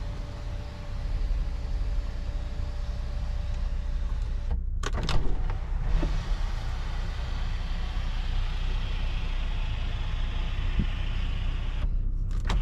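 Power panoramic sunroof of a 2019 Mercedes GLS450 in operation: a steady electric motor whine for about four seconds as the sunshade retracts, then a louder, even rushing whir as the glass panel opens. A low steady rumble runs underneath throughout.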